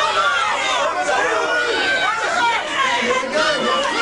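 Crowd chatter: several men talking at once in a room, their voices overlapping throughout.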